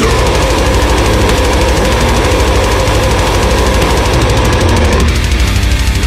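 Deathcore song: heavy, dense band sound over rapid-fire kick drumming, with a held note that stops about five seconds in.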